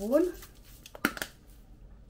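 Plastic spice shaker being handled, with one short sharp clatter about a second in.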